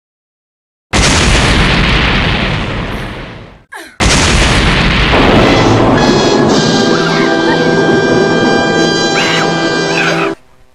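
A loud boom sound effect for a crash impact about a second in, dying away over a couple of seconds. A short whoosh follows, then a second loud blast at about four seconds that runs on into dramatic music with held notes.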